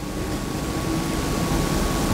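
Steady, even background hiss with a thin, faint steady tone running through it, slowly growing a little louder.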